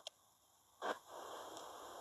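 A short sniff a little under a second in, then faint steady hiss.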